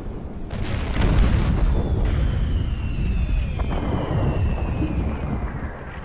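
Artillery explosions: heavy rumbling blasts that swell about a second in, with a long whistle falling steadily in pitch over about three seconds, like an incoming shell, before the rumble dies away near the end.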